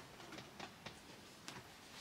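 Near silence, with a few faint clicks and rustles as a person leans down and picks up a hand-knitted wool vest.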